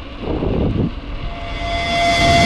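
Wind buffeting the microphone and tyre rumble from a bicycle rolling on asphalt. About halfway through, a held musical note fades in and grows louder.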